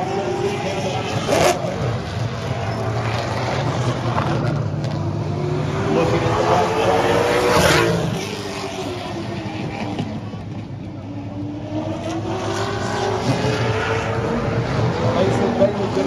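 Late Model stock car's V8 engine at full speed on a short oval during a qualifying lap. It is loudest about seven to eight seconds in as the car passes, its pitch rising and then falling away, and it swells and climbs again near the end as the car comes back around.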